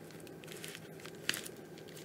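Faint rustling and crinkling of a kraft padded mailer envelope being handled, with scattered soft ticks and one sharper tick a little past a second in.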